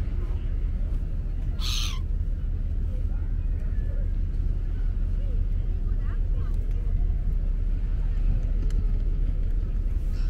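Outdoor waterfront ambience: a steady low rumble with faint distant voices, and one short, harsh squawk from a gull about two seconds in.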